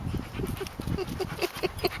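A dog panting close up, quick short breaths at about six a second.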